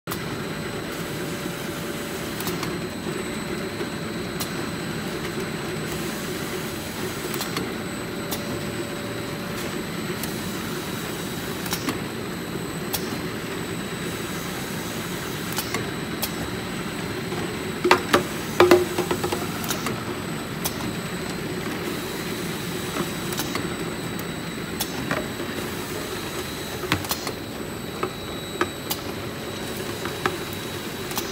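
Automatic bottle labeling machine running on gallon jugs: a steady conveyor and motor hum with scattered light clicks, and a brief burst of louder knocks about eighteen seconds in.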